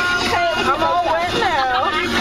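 Several excited voices talking and shouting over one another with long drawn-out cries, over the steady low rumble of a moving limousine's cabin.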